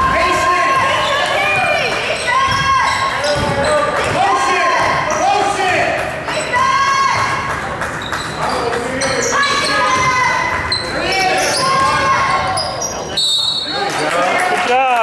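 Basketball dribbling and sneakers squeaking on a hardwood gym floor during play. There are many short squeaks that rise and fall in pitch, with thuds of the ball, echoing in a large gym.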